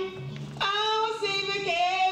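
A man singing a hymn into a hand-held microphone. He holds long notes that step from one pitch to the next, over a low sustained accompaniment note.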